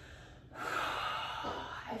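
A woman taking one long, deep breath, heard as airy breath noise. It starts about half a second in and lasts over a second.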